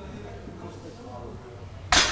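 A loaded barbell set back down on the floor at the bottom of a deadlift rep: one sharp metallic clank near the end, with a short ringing tail, over a low steady gym hum.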